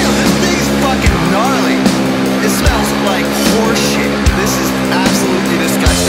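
Hardcore punk recording in a slow, heavy passage: distorted guitar and bass holding long chords, with a heavy drum hit about every second and a half and high sliding sounds over the top.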